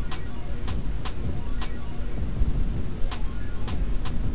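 A steady low rumble, with about seven light clicks at irregular intervals.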